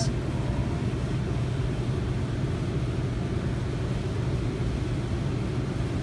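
A steady low background hum from a running machine, unchanging throughout.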